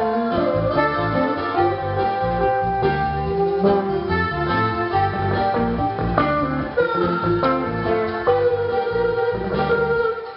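Live reggae band playing an instrumental passage, electric guitar to the fore over bass, drums and keyboard.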